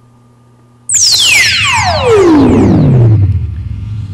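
Electronic music from a CD played very loud through an Aiwa DS-50 stereo's speakers. About a second in, the track starts with a loud synthesizer sweep that falls steadily from a high whistle down to a deep bass note, which then holds.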